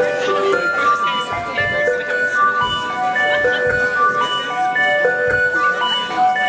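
A live band playing: a melody of clear held notes stepping up and down, with low drum beats now and then.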